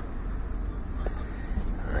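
Low steady rumble of a car heard from inside the cabin, with one faint click about a second in.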